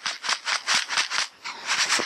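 Dry sand and gravel rattling in a plastic gold pan shaken rapidly back and forth, about six strokes a second. This is dry-panning: the vibration makes the dry dirt flow like a liquid so the heavy gold sinks against the riffles.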